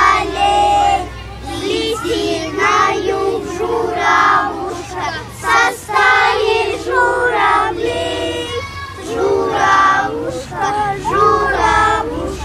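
A group of young children singing together in unison.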